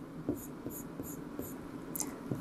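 Pen scratching on an interactive whiteboard in a run of short, quick strokes, about three a second, as hatch lines are drawn.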